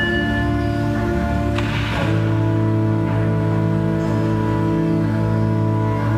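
Organ playing slow, sustained chords; the chord changes about two seconds in.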